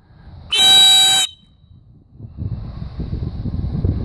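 A single loud blast on a dog-training whistle, a steady pitched tone lasting under a second: the stop signal telling the running dog to halt and sit. A low rumbling noise follows in the second half.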